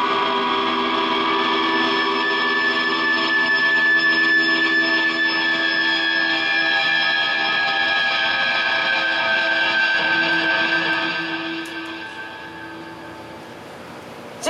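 Electric guitars' last chord of a live rock song held and ringing through the amplifiers after the drums stop, a steady drone of several pitches with a high tone on top, fading down about eleven seconds in.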